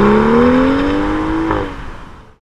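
Car engine accelerating, its pitch rising steadily, then dropping suddenly at an upshift about one and a half seconds in before the sound fades as the car pulls away.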